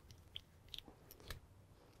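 Near silence, with a few faint clicks and rustles as hands work bucktail hair and tying thread onto a hook in a fly-tying vise.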